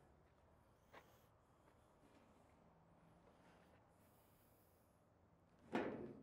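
Near silence with faint outdoor background noise, a faint click about a second in, and a single short thump near the end.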